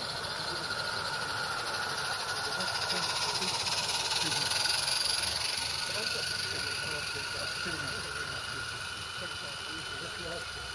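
Steady hiss of a 16mm-scale live-steam garden-railway locomotive hauling coaches past. The hiss swells about halfway through, then eases off.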